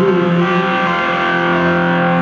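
Live rock band playing an instrumental passage, electric guitars through stage amplifiers holding sustained chords that shift about half a second in.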